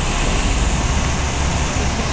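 Steady outdoor noise of wind and ocean surf, with a heavy rumble of wind on the microphone.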